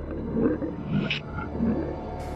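Creature sound effect: a reptile-like monster growling in several short snarls, with a hiss about a second in.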